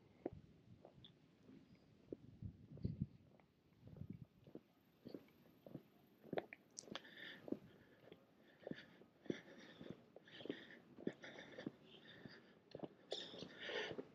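Near silence with faint footsteps of someone walking on pavement, a soft step about every half second.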